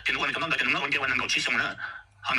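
Speech only: a person talking continuously, the voice dropping away near the end.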